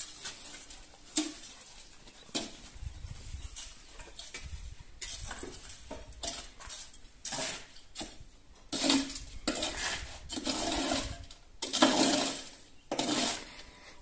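A long-handled metal scraper dragged and pushed through damp concrete mix in the steel hopper of a mobile cinder-block machine: irregular scrapes with metallic clinks, busier and louder in the second half.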